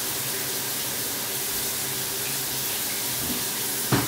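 Steady hiss of running water in a bathroom, with a single short knock just before the end.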